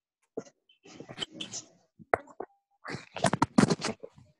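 A scatter of short pops and knocks, densest in a quick cluster near the end.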